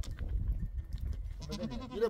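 A goat bleating, with a new call starting near the end, over a low rumble.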